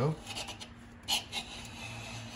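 Ridge reamer turned by wrench at the top of an engine cylinder, its carbide blade scraping away the ring ridge in several short rasping strokes.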